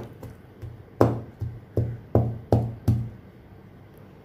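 Round steel utensil knocking on a wooden chopping board as boiled elephant apple slices are crushed flat: a couple of light taps, then six hard knocks, about three a second, from about one second in to three seconds in.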